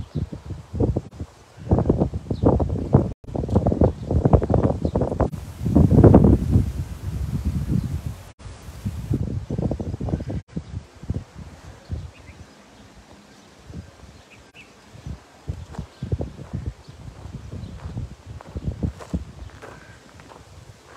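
Wind buffeting a handheld phone microphone in irregular gusts, loudest in the first half. It then drops, and footsteps on sandy ground are heard in the quieter second half.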